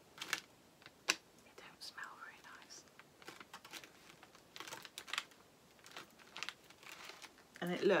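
Plastic snack packaging crinkling and clicking in short, scattered crackles as the packet and its inner tray are handled and opened.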